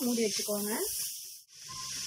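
Grated carrot frying in a pan, a steady sizzling hiss, with a voice over it in the first second. The sound drops out sharply about a second and a half in, then the frying hiss carries on evenly.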